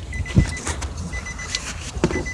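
Movement noise inside a car cabin: one low thump about half a second in, over a steady low rumble, with a few light clicks and a faint high tone that comes and goes.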